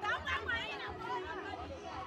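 Several people's voices chattering and calling out over one another, loudest in the first second.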